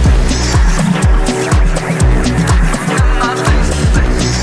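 Techno playing in a DJ mix: a steady four-on-the-floor kick drum, about two beats a second, each beat dropping in pitch, with electronic synth layers over it.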